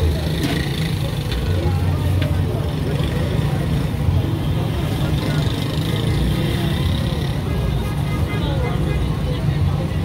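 Busy roadside street-market ambience: a steady low rumble with the voices of people talking in the background.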